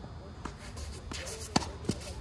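A tennis ball making four short, sharp knocks on a clay court, bouncing and being struck with a racket; the third knock, about three quarters of the way in, is the loudest.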